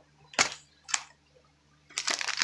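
Two short knocks about half a second apart, from items being handled and set down on a tabletop.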